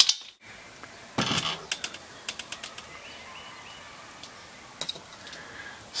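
Hand screwdriver driving screws into the steel leg bracket of a plastic folding table: a few short runs of clicking and rattling about one to two seconds in, then a single sharp click near the end.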